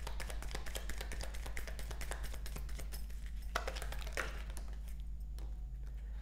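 Tarot cards being shuffled by hand: a fast stream of soft clicks and flicks, with a few sharper snaps about three and a half seconds in, thinning out towards the end.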